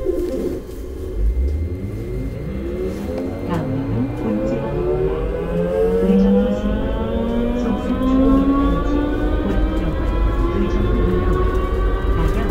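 Uijeongbu LRT light-rail train heard from on board as it pulls away and gathers speed. Under a low rumble, a whine made of several tones together climbs steadily in pitch from about three seconds in.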